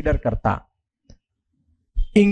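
A man speaking Hindi, his speech ending about half a second in, followed by near silence broken by one short, faint click about a second in.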